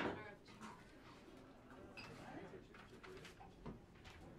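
Quiet room with faint, low talking, and a sharp click right at the start.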